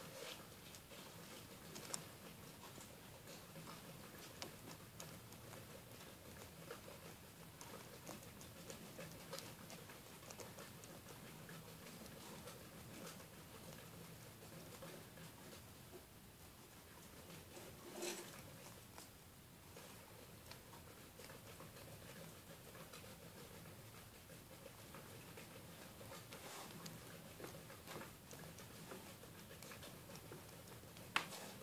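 White-bellied hedgehog rooting through wood-shavings bedding with its nose: faint, scattered rustles and small clicks, with one louder click about 18 seconds in.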